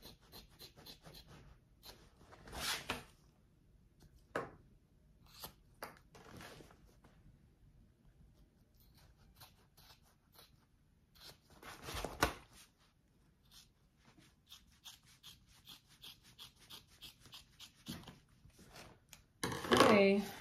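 Scissors snipping through stitched bag fabric, trimming a seam allowance down in short, scattered cuts with pauses between them, the loudest about twelve seconds in. Near the end comes a quick run of small, evenly spaced snips.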